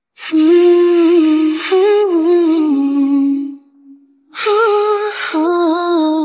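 A voice humming a slow, wordless melody a cappella, in two phrases with a short break about four seconds in, starting just after a moment of silence.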